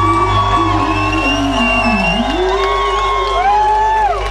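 Live rock band playing loud, with long sustained electric notes and a held low bass. About two seconds in, one note slides sharply down and back up. Crowd whoops sound through it.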